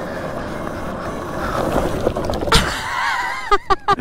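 Wind and tyre noise from an electric ATV ridden at speed on a rough track, with no engine sound. There is a sharp thump about two and a half seconds in, then the rider gasps and laughs near the end.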